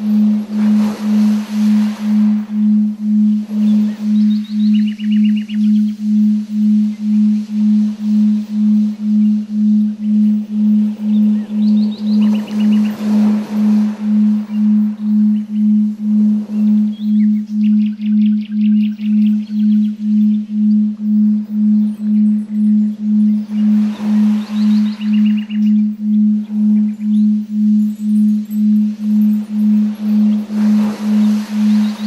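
A steady low electronic tone pulsing evenly, just under twice a second: a generated binaural/isochronic 'frequency' track. Beneath it is a quieter bed of soft swelling hiss with occasional bird-like chirping trills.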